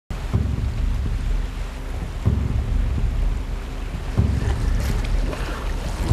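River water and wind: a deep, noisy wash of moving water that swells about every two seconds.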